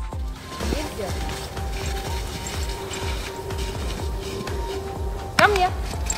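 Background music with a steady beat and held tones. Near the end a woman's voice calls out loudly and sharply.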